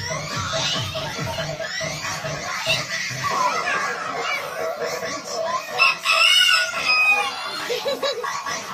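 A rooster crowing, one long call about six seconds in, with children's voices and music in the background.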